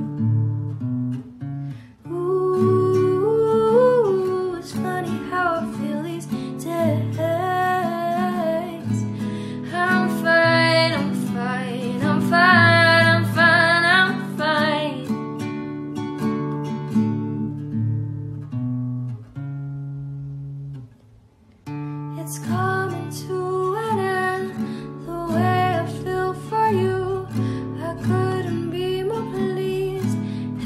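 A young female singer performing an original song to acoustic guitar accompaniment. The voice drops out about halfway, the accompaniment thins to almost nothing for a couple of seconds, then voice and guitar come back in.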